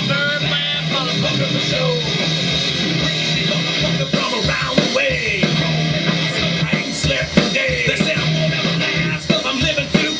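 A song plays, with guitar and a singing voice.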